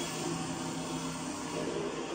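Steady, even noise, like a hiss, with a faint low hum under it.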